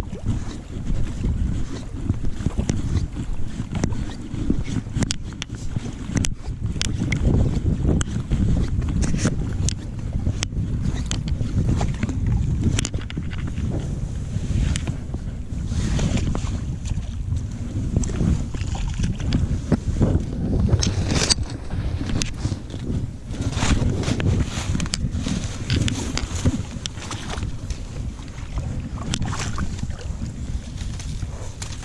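Wind buffeting the microphone, a steady low rumble, with short rustles and crackles from dry reeds brushing past.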